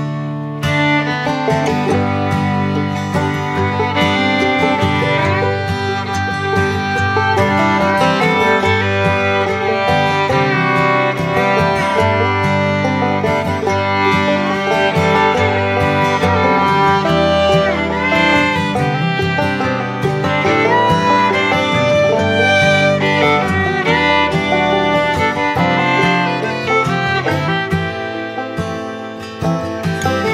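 Background music: a bluegrass-style tune with fiddle and guitar over a steady beat.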